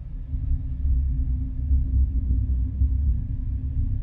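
A loud, steady low rumble that swells up at the start and then holds.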